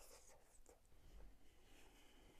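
Near silence with faint soft chewing and a few small mouth clicks while a bite of soft durian layer cake is eaten.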